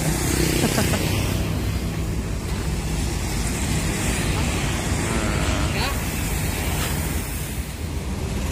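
Diesel coach engine idling with a steady low rumble, under a haze of street traffic noise.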